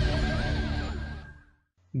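Television news theme music ending on held, wavering chords that die away about a second and a half in, followed by a brief silence.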